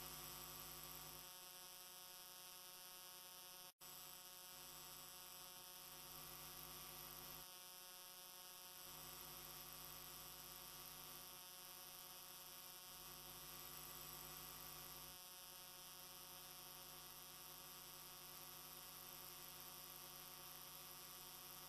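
Near silence: a faint, steady electrical mains hum made of many steady tones, which cuts out for an instant just before four seconds in.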